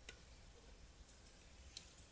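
Near silence with two faint clicks of metal knitting needles touching as stitches are worked, one just after the start and one near the end.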